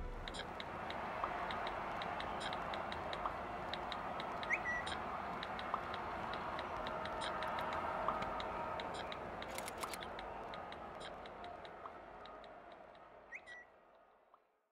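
Steady room noise with faint taps and a few short electronic tones and quick rising chirps from mobile phones in use. It all fades away over the last few seconds.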